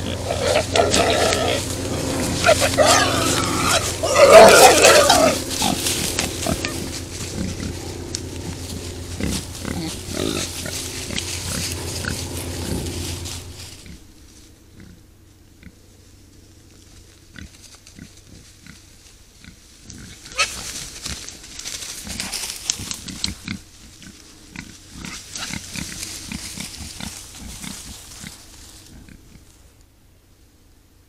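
Wild boars calling with wavering grunts and squeals, loudest about four seconds in, over a steady low hum. After a cut near the middle, only quieter clicks and rustles of boars foraging in grass and leaf litter.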